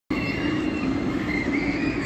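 Amusement-park ride machinery running: a steady low rumble with high, slightly wavering tones held above it.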